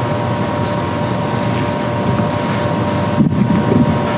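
Steady low rumbling room noise carried by an open microphone, with a faint steady hum of two tones running through it; a few low bumps near the end.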